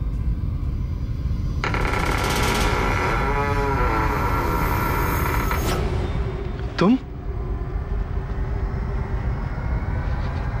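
Eerie suspense score: a low rumbling drone with a layer of held, wavering tones that drops out after about six seconds. About seven seconds in comes one short, sharp sound that rises quickly in pitch.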